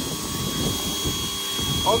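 Electric pressure washer running steadily, with a constant whine and the hiss of its water jet striking a car's body panels.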